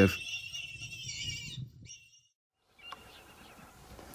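Faint outdoor bush ambience with a low rumble and a steady high-pitched drone. It drops out to dead silence for about a second midway, then returns faintly.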